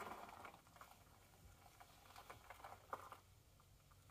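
Near silence: faint scattered ticks and rustles, with a small burst at the very start and a sharper tick about three seconds in.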